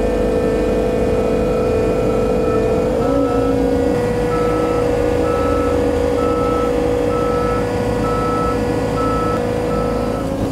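Compact track loader's diesel engine running steadily under load as it backs up steel ramps onto a truck bed. From about three seconds in, its backup alarm beeps about once a second.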